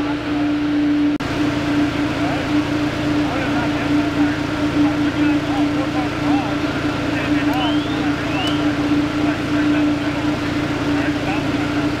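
Fire engine running at the scene with a steady, even hum, over indistinct voices of firefighters talking.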